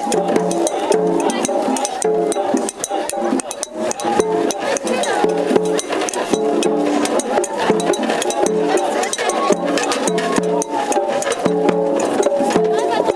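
Japanese festival float music (matsuri-bayashi) played on the float: taiko drums struck steadily under a melody that repeats every couple of seconds, with voices mixed in.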